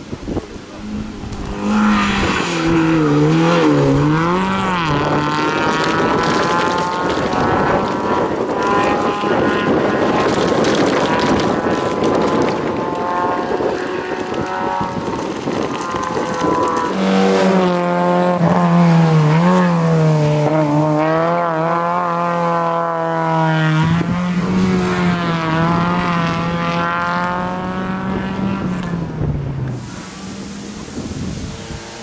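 Rally-prepared Fiat Seicento's small four-cylinder engine revved hard, the revs climbing and dropping again and again with gear changes and lifts for corners.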